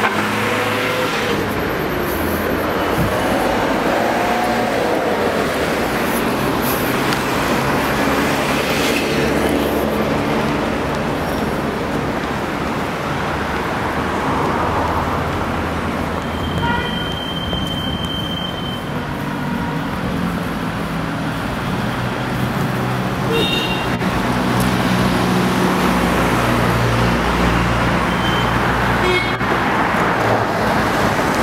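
Street traffic: engines running and cars passing on a city road, a steady mix of engine hum and tyre noise. About halfway through, a single high steady tone sounds for about two seconds.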